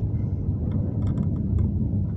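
Steady low rumble of a car on the move, heard from inside the cabin, with a few faint clicks.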